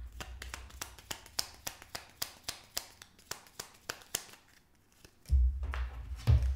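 Tarot cards being handled and laid down on a wooden table: a run of light, irregular clicks and taps that thins out about four seconds in.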